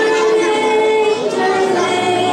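Young voices singing a held note together, moving to a new note a little past halfway, accompanied by keyboard, violin and cello.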